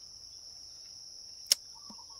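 Steady high-pitched drone of insects, with a single sharp click about one and a half seconds in.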